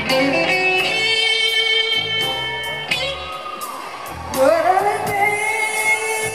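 Live band music: a woman singing lead over electric guitar, bass and keyboards, with long held notes and a note that rises about four and a half seconds in.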